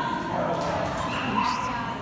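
A dog yipping, with people talking in the background.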